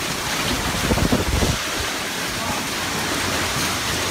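Strong storm wind blowing steadily, a dense rushing noise, with a few low bumps about a second in.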